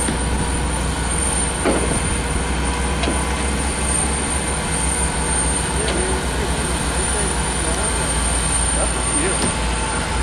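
Lifted off-road truck's engine running as it drives through snow, a steady low rumble.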